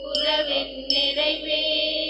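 Hymn music during Mass: sustained instrument tones with new notes struck about every second, and a voice singing along.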